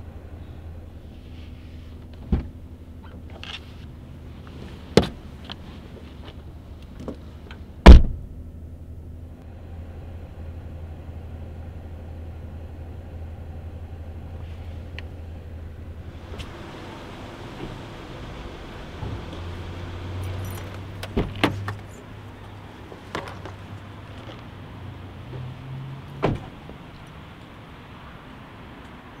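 Sounds of a stopped car: a steady low engine hum with scattered clicks and knocks, the loudest a single heavy thump about eight seconds in. About halfway through, the hum gives way to a steady hiss, with a few more knocks and clicks near the end.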